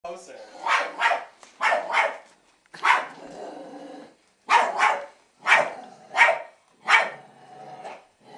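Small fluffy dog barking, about ten sharp barks with several in quick pairs.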